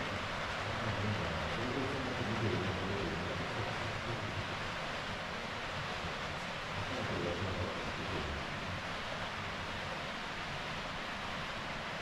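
Steady hiss-like room ambience, an even wash of noise with no distinct events, and a faint low murmur now and then.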